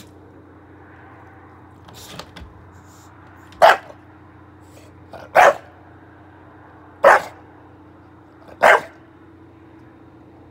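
English bulldog barking four times, short barks evenly spaced about a second and a half apart, play-barking from a play bow.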